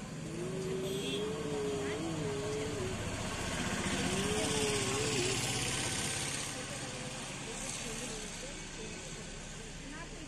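Two long, wavering hums from a person's voice, the first lasting nearly three seconds, over street traffic noise that swells near the middle as a vehicle goes by.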